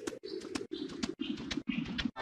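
Effects-processed TV logo audio: a low hum chopped by brief dropouts several times a second, quieter than the music around it.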